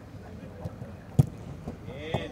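A football kicked hard once, a sharp thud a little over a second in, with a couple of softer touches on the ball before it, over open-air background noise.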